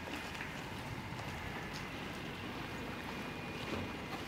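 Mercedes-AMG car creeping slowly over wet tarmac: a steady low engine rumble with tyre hiss and small clicks.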